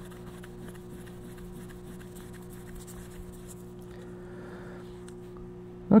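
A steady low hum with faint rubbing of a cloth wiping polishing paste off a stainless steel plate. The rubbing is slightly more audible about four seconds in.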